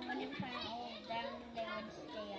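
Background chatter of children's voices in a classroom, at a moderate level.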